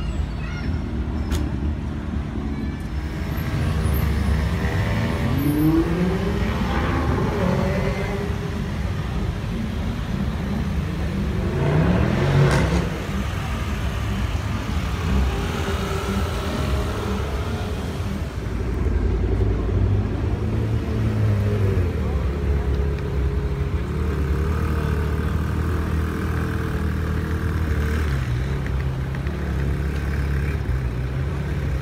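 Sports-car engines running as the cars creep past in slow traffic, with revs rising around five seconds in and again, louder, near twelve seconds.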